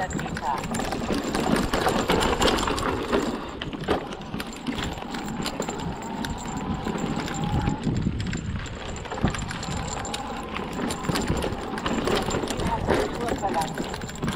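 Hardtail e-mountain bike rolling fast down a dirt forest singletrack: continuous tyre noise on dirt and dry leaves, broken by many small knocks and rattles as the bike goes over bumps, with wind on the mic.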